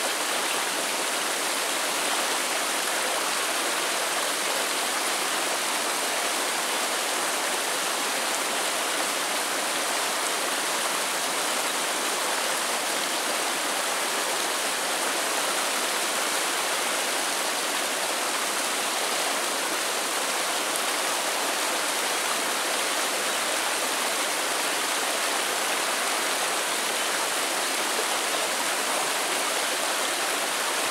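A small rocky river running over a short cascade of shallow rapids, a steady, unbroken rush of water.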